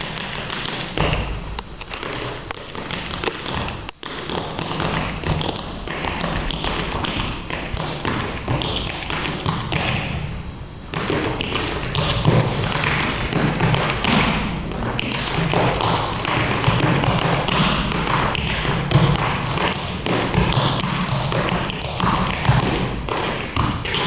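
Tap shoes striking a stage floor in a fast, unbroken run of taps and heavier stamps, with no music. There is a momentary break about four seconds in and a softer patch just before eleven seconds, after which the steps come denser and louder.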